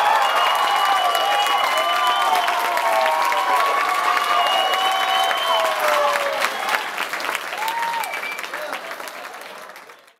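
A crowd applauding, with voices cheering over the clapping; the applause fades away over the last few seconds.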